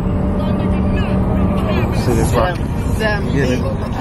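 Pickup truck driving at highway speed, heard from inside the cab: a steady rumble of engine and road noise, with a steady hum in the first second and a half.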